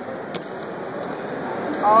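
A .45 ACP cartridge clicking into a steel 1911 pistol magazine once, about a third of a second in, as it is thumbed in by hand, over the steady chatter of a crowded exhibition hall. A voice comes in briefly near the end.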